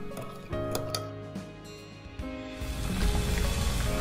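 Soft background music, with a few light clinks of a metal spoon stirring a dressing in a glass bowl in the first second or so. From past the halfway point, the rushing bubble of a pot of water at a rolling boil rises under the music.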